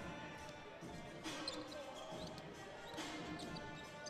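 Faint arena sound: a basketball being dribbled on a hardwood court, with music playing low over the arena's sound system.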